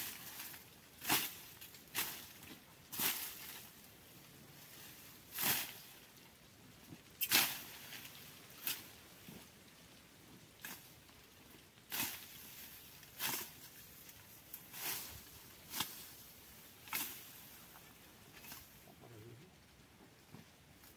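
A long-handled brush hook chopping and swishing through the undergrowth and leafy stems under a cashew tree while the brush is cleared. The strokes come as short, sharp chops about every second or two, at an uneven pace, with brief pauses.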